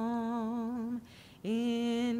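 A woman's solo voice singing unaccompanied, holding a low note with a gentle vibrato, taking a quick breath about a second in, then holding the next note.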